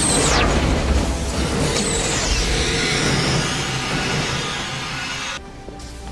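Sci-fi transporter beam effect: a sudden burst with a falling whoosh, a second descending sweep about two seconds in, and a sustained shimmering hiss over film score music, cutting off shortly before the end.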